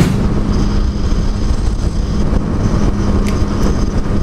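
Yamaha MT-09 Tracer's three-cylinder engine running steadily at cruising speed, with wind rushing over the camera microphone.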